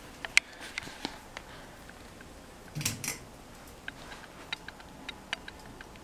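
Handling noise from a handheld camera being carried: scattered small clicks and rustles, with a sharper click just under half a second in and a brief rustle about three seconds in.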